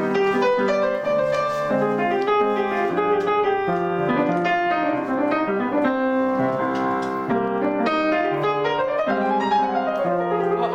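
Bösendorfer grand piano played solo, an instrumental passage of chords and moving melody with no voice, with a run climbing up in pitch near the end.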